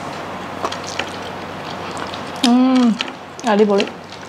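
A woman eating by hand makes two short, closed-mouth "mmm" hums of relish, each about half a second long, the second wavering in pitch. Before them, faint clicks of chewing over a steady hiss.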